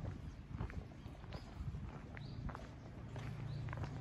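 Footsteps crunching on a gravel path at a steady walking pace, a little under two steps a second.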